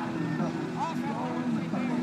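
Pulling tractor's diesel engine running steadily at a low, even note, with people talking over it.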